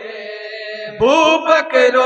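A group of men chanting an Urdu naat (devotional poem) unaccompanied into a microphone: a note held for about a second, then a louder voice comes in on a rising line and carries the melody on.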